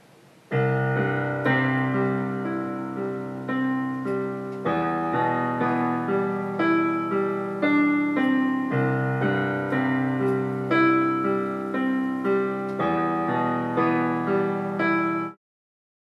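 Electronic keyboard played with a piano sound: a solo run of repeated broken-chord notes, the chords changing every few seconds. It starts about half a second in and cuts off suddenly near the end.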